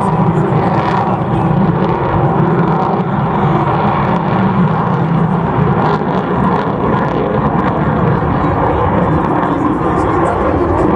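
Lockheed Martin F-35A Lightning II fighter jet's single turbofan engine, a loud, steady jet noise as the aircraft manoeuvres overhead under high g.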